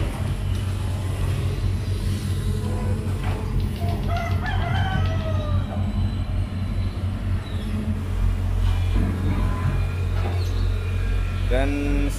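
Diesel engine of a Sumitomo SH210 amphibious excavator running steadily, with a bird calling once about four seconds in.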